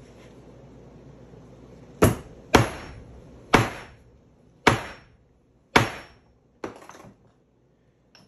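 A leather maul striking a handled concho cutter on leather, six sharp blows about a second apart starting about two seconds in, the last one lighter. The blows don't drive the cutter through the leather: the handled cutter gets too little force to cut.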